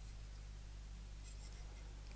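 Quiet room tone with a steady low hum, and faint rubbing as a small wooden part is turned over in the hands.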